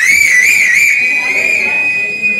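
A loud, high-pitched whistling tone that wavers up and down several times in the first second, then holds steadier, over a thin steady high tone.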